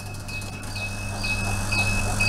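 Steady hum of a cabinet egg incubator's fan and motor, with a faint high chirp repeating about twice a second over it.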